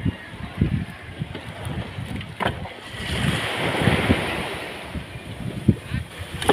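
Whole tuna being dropped one after another into a plastic drum, a few dull thuds, over water lapping at the boat and wind on the microphone that swells in the middle.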